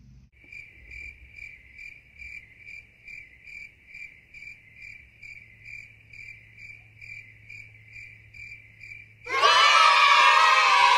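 Crickets chirping in a steady, even rhythm of about two and a half chirps a second over a faint low hum. Near the end a much louder burst of crowd cheering breaks in suddenly.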